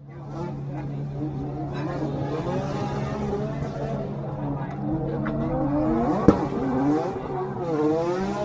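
Drift car engines revving hard, their pitch rising and falling against each other over a steady low hum, as the cars slide through tyre smoke. There is a single sharp crack about six seconds in.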